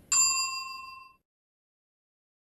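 A single bright bell ding sound effect, the notification-bell chime of a subscribe-button animation, struck just after the start and ringing out over about a second.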